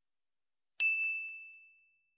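A single notification-bell ding sound effect for a 'click the bell' subscribe animation: a sharp strike about a second in, then one high ringing tone fading away over about a second.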